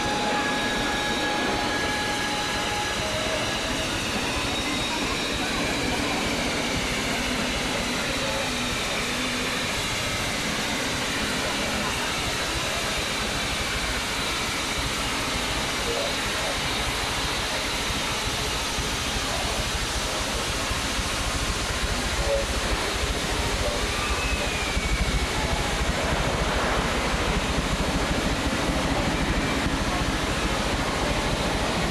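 Amusement-park train pulling into a station: a 4-4-0 style locomotive followed by open passenger cars rolling along the track, a steady rail-and-wheel noise that grows louder with a low rumble about two-thirds through as the cars pass close. People's voices sound in the background.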